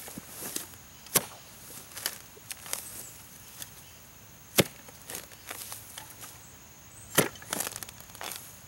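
Clamshell post-hole digger being jabbed into sandy loam, its blades biting into the ground in a few sharp chops. The loudest come about a second in, midway and near the end, with softer knocks and scrapes of soil between.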